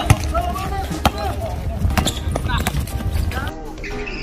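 Basketball being dribbled on an outdoor hard court, sharp bounces about once a second with the first the loudest, among players' shouts.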